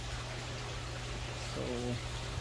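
Steady rush of running water in a recirculating aquaculture system, with a low steady hum underneath. A single spoken word comes in near the end.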